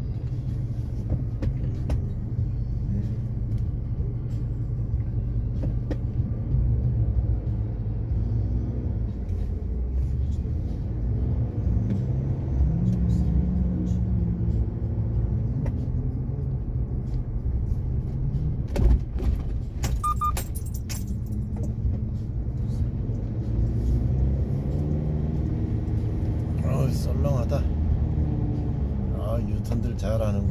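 Steady low rumble of a car's engine and tyres, heard from inside the cabin while driving, with a short high beep about two-thirds of the way through.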